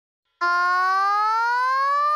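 A moment of total silence, then one long tone, rich in overtones, that rises slowly and smoothly in pitch.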